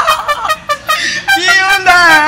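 A forró band's beat drops out briefly. Then, about a second in, a saxophone comes in holding a single wavering note that bends in pitch.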